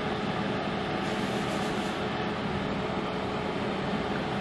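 Steady machine hum in the room, an even whir with a faint steady tone and no changes.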